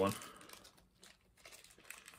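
Faint crinkling of a mystery pin's foil packet being handled and opened.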